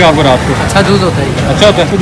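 Speech: men talking in Urdu, with no other clear sound standing out.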